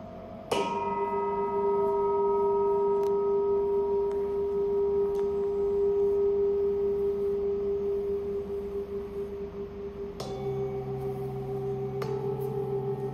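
Handmade Tibetan singing bowl, the crown chakra bowl of a seven-chakra set, struck once with a felt mallet about half a second in, ringing long with one strong steady hum and several higher overtones that slowly fade. Near the end a second bowl is struck, adding a different tone over the fading ring.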